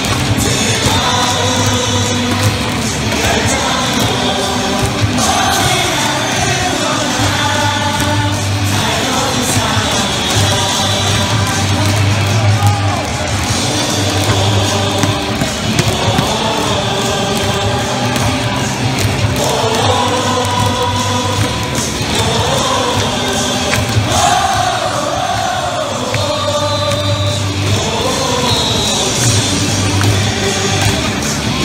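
A baseball stadium crowd singing a player's cheer song in unison over loud music from the stadium speakers, with a steady bass beat.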